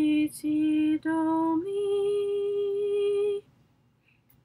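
A woman singing solfège sight-singing exercises unaccompanied: two short notes on the same low pitch, a step up, then one long held higher note that breaks off about three and a half seconds in.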